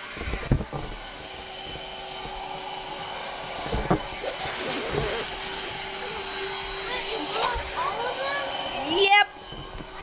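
A steady whirring motor noise with a constant hum that cuts off suddenly near the end, with brief vocal sounds over it.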